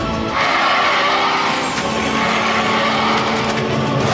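Cartoon sound effect of a catapult being released and flinging its riders through the air: a sudden rushing whoosh that sets in about a third of a second in and carries on, over a steady music score.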